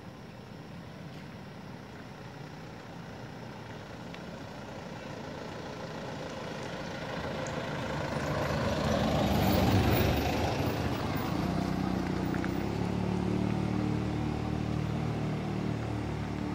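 A motor vehicle on the road grows louder as it approaches and passes, loudest about ten seconds in. A steady engine hum carries on after it.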